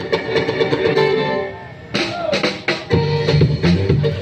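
Acoustic guitar played through a PA speaker. It thins out briefly about a second and a half in, then the playing comes back in full about two seconds in.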